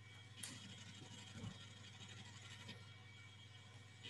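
Near silence: room tone with a faint steady low hum and a couple of faint soft clicks.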